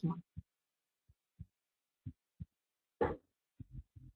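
A woman's speech cuts off at the start. Then comes a pause of near quiet with a few faint, short low thumps and one brief louder noise about three seconds in.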